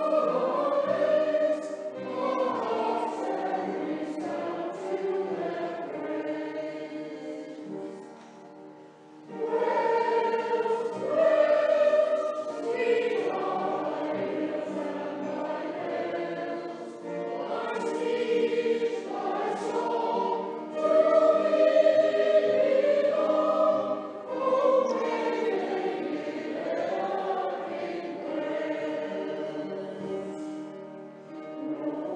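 Mixed amateur choir of men's and women's voices singing a song in phrases in a church, with a short breath-pause about eight seconds in.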